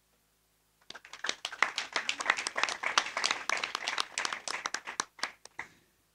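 A small seated crowd clapping for about five seconds, starting about a second in and thinning out near the end.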